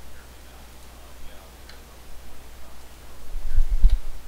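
A few faint computer-mouse clicks over a steady low hum, then several low thumps close together near the end.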